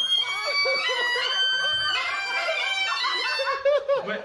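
Great Highland bagpipes playing: held chanter notes that change every second or so over the steady sound of the drones.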